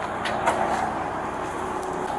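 Heavy tow truck's engine idling steadily, with two light clicks about half a second in.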